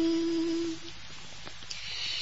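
A singer holding the last note of a sung line steady, cutting off under a second in, followed by a short lull with a faint hiss.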